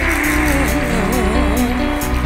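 Live dangdut band music: a steady beat and bass under a melody line that wavers up and down in pitch.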